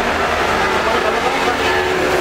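Cabin noise of a moving city bus: a steady rumble of engine and road.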